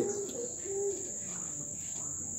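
A steady high-pitched whine that holds one pitch without pulsing.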